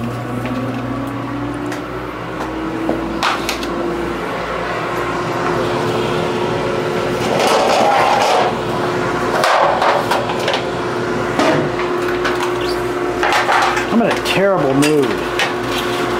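Metal baking sheets and pans knocking and clattering as they are handled, over a steady electric hum that climbs in pitch over the first few seconds and then holds, like a kitchen fan spinning up. A short wavering pitched sound comes near the end.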